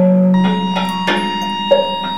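Improvised music on a homemade sanza (thumb piano): plucked notes that start sharply and ring on, following each other a few tenths of a second apart over a low sustained tone.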